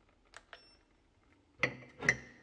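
Two soft clicks from the touch buttons on an electric kettle's handle, with a brief faint electronic beep after them. Near the end a ceramic mug knocks against the others on a shelf with a short ringing clink.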